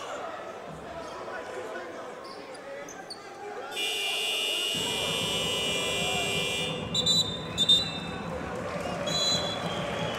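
Basketball arena crowd noise, with the arena's electronic buzzer sounding for about three seconds, starting and stopping abruptly about four seconds in. A few short high whistle blasts follow near the end.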